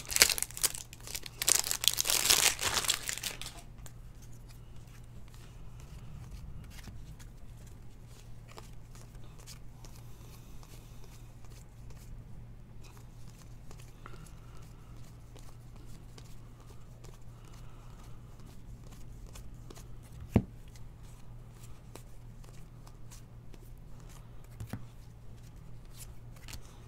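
Foil trading-card pack wrapper tearing open and crinkling loudly for the first three seconds or so. Then quiet, faint ticks of cards being handled and flipped, over a low steady hum, with one sharp click about twenty seconds in.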